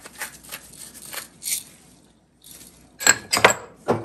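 Hand-twisted pepper mill grinding black peppercorns: a run of quick ratcheting clicks, about three to four a second. After a brief pause, a few louder sharp clacks come near the end.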